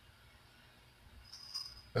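A quiet pause of low room tone, with a faint soft hiss lasting about half a second near the end.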